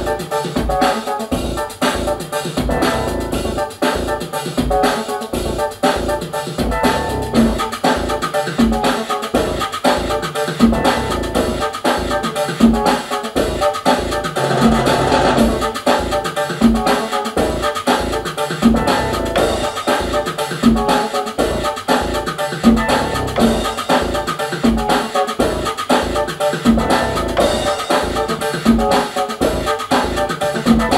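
Electronic Latin groove from a drum machine and synthesizers: a steady, evenly repeating kick-and-percussion beat under bass and keyboard parts, with no vocals.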